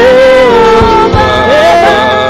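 A man singing a slow worship song into a handheld microphone, holding long notes that glide between pitches, over musical accompaniment with a few low beats.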